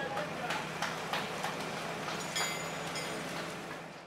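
Work-site ambience: a steady low hum with scattered knocks and clanks and brief snatches of voices, fading out near the end.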